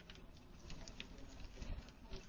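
Faint outdoor background sound picked up by a doorbell camera's microphone, with a few light scattered clicks.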